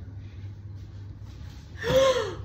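A woman's loud startled gasp near the end, rising then falling in pitch, in alarm as the candy filling spills out of the giant chocolate egg she is holding. Before it there is only a low steady hum.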